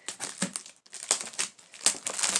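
Crinkling and rustling of packaging as a large, partly opened cardboard box is pulled open by hand, in quick irregular crackles with a short lull a little before the middle.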